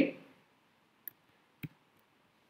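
Two clicks of a computer mouse, about half a second apart, the second louder, as the Profile menu item is selected.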